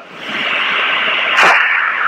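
Steady hiss of a telephone line, held to the phone's narrow band, swelling up over the first half second. A short breathy puff comes through about one and a half seconds in.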